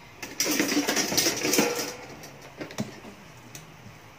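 Metal spatula scraping and scooping fried garlic around a nonstick frying pan, a dense clattering scrape lasting about a second and a half, followed by a few light clicks of the spatula against the pan.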